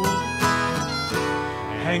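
Gibson J-50 acoustic guitars strumming a country-style chord accompaniment between sung lines, with a run of sharp strokes in the first second and held chords after.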